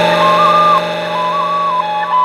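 Music from a Brazilian funk track in a beatless break: a flute-like lead plays a short, repeating ornamented phrase over a sustained held chord.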